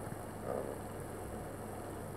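Steady low background hum and hiss, with one brief soft sound about half a second in.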